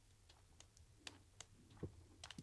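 Near silence with a few faint computer mouse clicks, the last one near the end a little louder.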